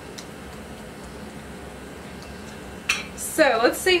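Faint steady background with a few light clicks, then a woman's voice briefly near the end.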